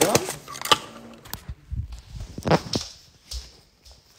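Sharp clicks and taps from a small plastic sweetener container being handled and dispensed, several in the first second and a half. A short voice-like sound follows about two and a half seconds in.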